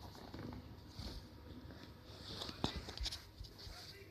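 Rustling and scraping close to the microphone, broken by a few soft knocks, the sharpest a little before three seconds in. This is handling noise as the camera is moved and rubbed against nearby surfaces.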